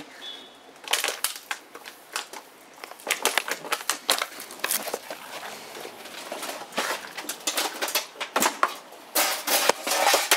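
A toaster being smashed with a pickaxe on paving: irregular sharp crunches and clatters of metal and plastic breaking. They start about a second in and come thickest near the end.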